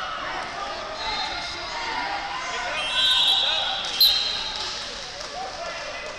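Voices calling and shouting across a large, echoing sports hall during a youth wrestling bout, with a high steady tone for about a second near the middle and a sharp knock about four seconds in.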